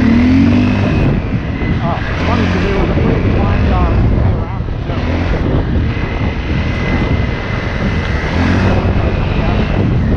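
Dirt bike engine running under way, its revs rising and falling several times as the rider works the throttle and gears, over heavy wind noise on the helmet-mounted microphone.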